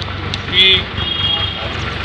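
Steady low drone of an idling engine, with one short spoken word about half a second in.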